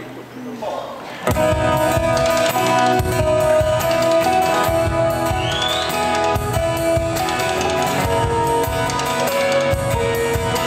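Live pop band starting a song: after a quieter first second, strummed acoustic guitar and a drum kit come in together and play on steadily and loudly.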